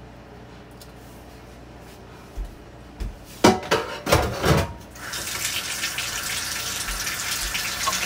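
Clatter of an emptied stainless steel pot being put down, a few loud knocks about three and a half seconds in, then a kitchen faucet running steadily from about five seconds in.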